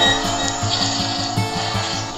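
Instrumental music from the song, without vocals: held tones over a steady low beat.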